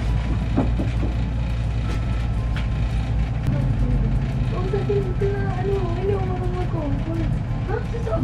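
A steady low rumble, such as a window air conditioner running, with a few light knocks early on; from about halfway in, a person hums a wavering tune over it.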